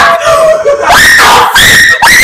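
People screaming excitedly at full level, several high-pitched voices overlapping with pitch sliding up and down.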